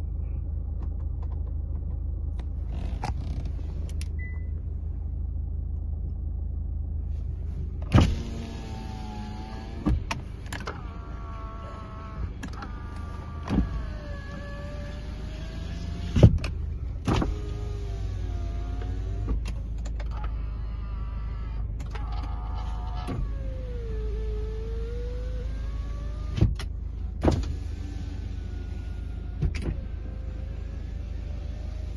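The 1.7-litre engine of a 2016 Kia Sportage idling steadily. About eight seconds in, its power windows start running up and down again and again, each run a motor whine that slides in pitch and ends in a clunk as the glass reaches its stop.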